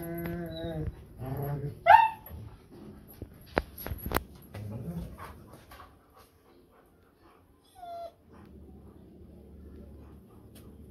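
A German Shepherd whining in a few short whimpers: one at the start, a sharp high rising-and-falling whine about two seconds in, and a brief one near the end. Two sharp clicks come between them.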